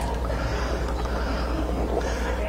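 A steady low hum that runs unchanged.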